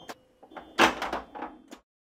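A short electronic sound-effect sting: sharp swelling hits with a faint ringing tone under them, cut off abruptly near the end.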